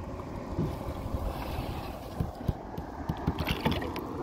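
Wind rumbling on the microphone over water lapping against a kayak hull, with a few light knocks; about three and a half seconds in, a short splash as a snook is lowered into the water for release.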